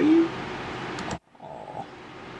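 A voice saying "oui" with a rising pitch, then steady room hiss that cuts out suddenly just past a second in, leaving faint hiss.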